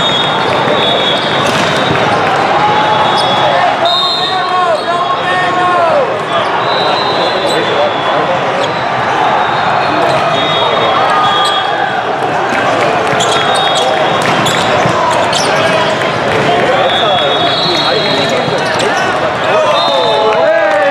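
Din of a large indoor hall with several volleyball courts in play: many voices calling and shouting, volleyballs being struck and bouncing, and several high, steady whistle blasts. A loud shout rises near the end.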